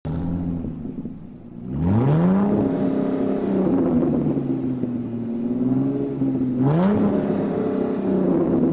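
Car engine revving: a low idle, then a steep rise in pitch about two seconds in that holds and sags slightly, and a second rise near the end.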